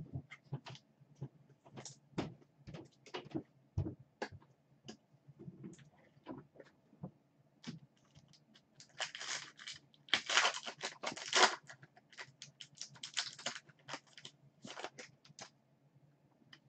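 Trading cards and foil pack wrappers being handled at close range: a scattered run of light clicks and taps, with a denser crinkling stretch that starts about nine seconds in and lasts some three seconds.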